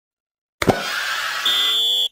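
Opening sound effect of a TV commercial: a sudden hit about half a second in, then a bright, noisy sustained sound. A steady high tone joins it near the end.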